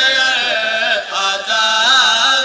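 Group of men chanting a noha, a Shia lament, together in a rising and falling melody, with brief breaks about a second in.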